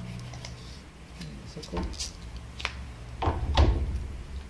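Cardboard box and packaging insert being handled as a USB Wi-Fi adapter and its antenna are pulled out: several short clicks and scrapes, the loudest just after three seconds in, over a low steady hum.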